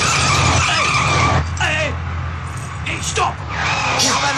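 Car tyres screeching over an engine's low rumble as a vehicle brakes hard: a steady high squeal for about the first second and a half, then shorter sliding squeals about one and a half and three seconds in.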